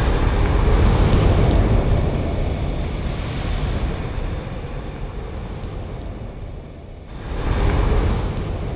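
Fire-and-rumble sound effects of an animated logo intro: a loud low rumble with a rushing, fire-like noise that slowly fades, then a rising whoosh near the end that swells and dies away.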